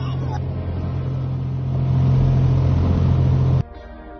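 Small patrol boat's engine running at speed, a steady low drone with rushing water and wind, slightly louder midway, which cuts off abruptly near the end.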